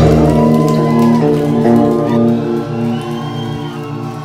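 Heavy metal electric guitars and bass hold the final chord of a song after the drums stop, the chord ringing out and slowly fading.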